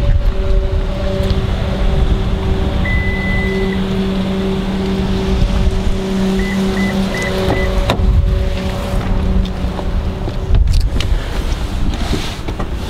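A 2014 Toyota RAV4 Limited's power liftgate motor hums steadily for about ten seconds, with one long electronic beep about three seconds in and four short beeps a few seconds later. Low rumbling handling noise runs under it.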